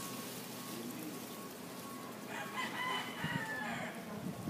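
A rooster crowing once, a single drawn-out call that starts a little past halfway through and lasts under two seconds.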